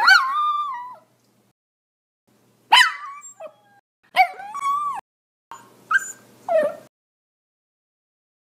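A dog whimpering and yelping in four short bouts, each a high call that rises and falls in pitch: one at the start, then about three, four and five and a half seconds in.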